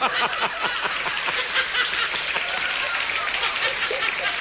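Audience applauding and laughing right after a punchline, a steady dense patter of clapping.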